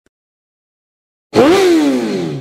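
A single motorcycle engine rev, starting abruptly a little over a second in: the pitch climbs briefly with the throttle blip, then falls steadily away as the revs drop.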